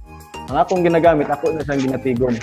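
A man speaking over a video-call connection, in words the transcript did not catch.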